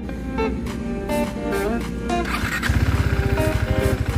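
Background music with a melodic line over a KTM 390 Duke motorcycle's single-cylinder engine. About two-thirds of the way in, a low, rapid, even thudding comes up and becomes the loudest sound.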